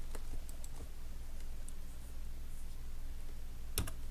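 Scattered faint clicks of a computer mouse and keyboard over a steady low hum, with two sharp clicks in quick succession near the end.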